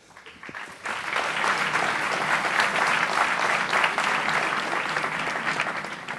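Audience applauding in a lecture hall: the clapping builds up over the first second, holds steady, and dies away near the end.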